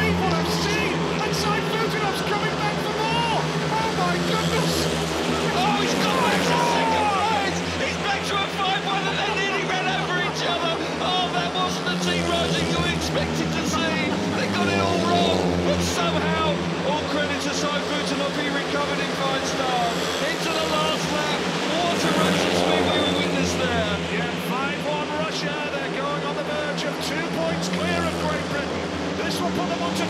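Four speedway bikes' 500 cc single-cylinder methanol engines racing, their pitches rising and falling as the riders throttle on and off through the turns, a steady loud din throughout.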